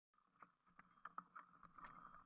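Faint sound of a mountain bike rolling over a rough, muddy trail, with a few light knocks and rattles from the bike and camera mount over a steady low hum.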